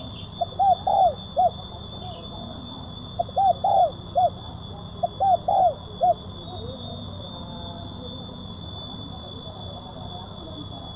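Spotted dove cooing: three phrases of about four notes each, a couple of seconds apart, ending about six seconds in.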